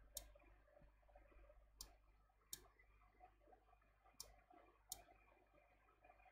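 Five faint, sharp computer mouse clicks, spaced irregularly, against near silence.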